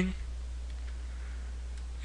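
Steady low electrical hum with faint hiss from the recording, in a pause between words.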